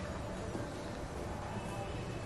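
Sewing machine running steadily, stitching fabric.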